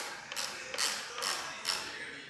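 Hand ratchet screwdriver ratcheting in short back-and-forth strokes, about five rasps in two seconds, while a windscreen mounting screw on the motorcycle is tightened.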